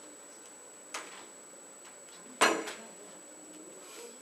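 Objects being handled and set down at a desk: a light knock about a second in, then a louder clattering knock with a short rattle about a second and a half later, over a faint steady high-pitched whine.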